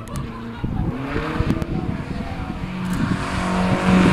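Drift car's engine held at high revs, its pitch climbing about a second in and then holding, with tyre squeal growing louder as the car slides toward and past.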